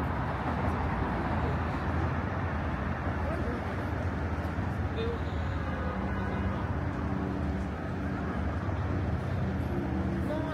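Steady road traffic on a busy city street: a continuous rumble of passing cars with tyre noise, mixed with faint voices of people nearby.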